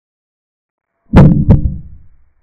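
Chess-board capture sound effect: two sharp wooden knocks about a third of a second apart, each dying away quickly, marking one piece taking another.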